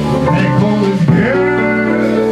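Live small jazz combo: baritone saxophone playing a melodic line over plucked upright bass and drums, with a note scooping up about a second in.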